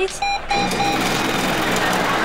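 A few short electronic beeps from an ATM keypad, then a steady mechanical whir from about half a second in as the machine pays out a wad of cash.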